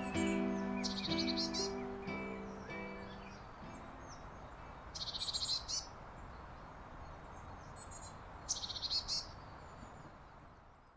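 A songbird sings three short, rapid, trilling phrases, each a few seconds apart, over a steady outdoor hiss. Underneath at first, sustained plucked acoustic-guitar notes ring out and die away over the first few seconds.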